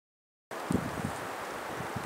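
Dead silence for the first half second, then outdoor background noise of wind and rustling, with a few low thumps of wind buffeting the microphone.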